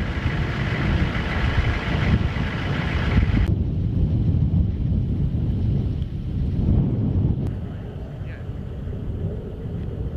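Wind buffeting the microphone in a low, uneven rumble. A brighter hiss over it cuts off abruptly about three and a half seconds in.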